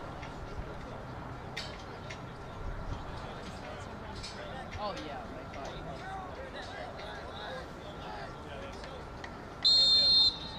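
A referee's whistle blows one short, steady blast near the end, over faint distant voices of players and spectators.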